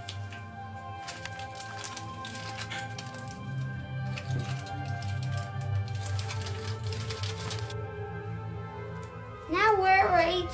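Aluminium foil crinkling in two long stretches as it is folded over fish on a baking tray, over background music.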